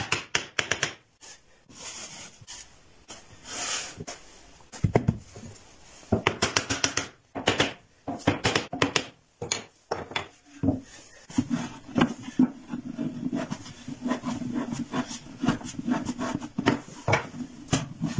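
Wooden box panels being fitted together by hand: quick light taps and knocks on the wood, then wood rubbing and scraping against wood as the parts are slid and handled.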